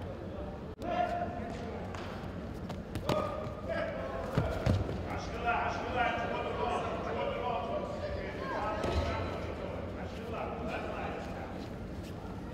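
Men's voices calling out during judo bouts, with a few dull thuds of bodies hitting the tatami mats about three and four and a half seconds in.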